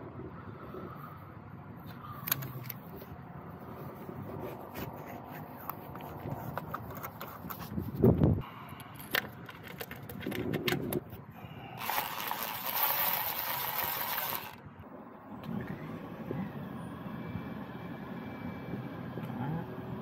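Hand tools at work on a car engine: a string of sharp clicks and metallic taps from a ratchet and socket as the spark plugs and ignition coil bolts go back in. A single heavy thump comes about 8 seconds in, and a loud rushing noise lasts two to three seconds later on.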